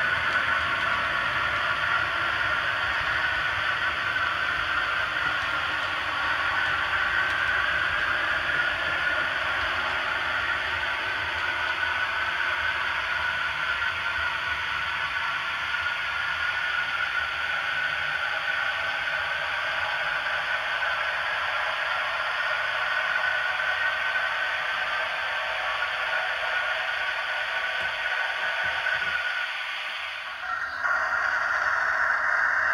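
Steady hiss of steam from a standing steam locomotive, a reproduced sound effect for a model locomotive, dying down slightly near the end.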